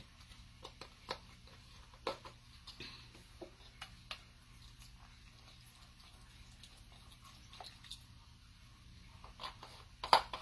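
Faint, scattered clicks and light taps from handling a carton of beef broth and twisting its plastic screw cap.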